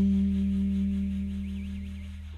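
Instrumental jazz: the tune's last held chord slowly dying away.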